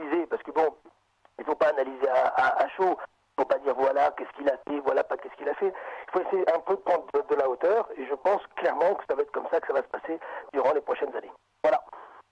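A person talking over a telephone line on a radio broadcast; the voice sounds thin and narrow. There are short pauses about one and three seconds in.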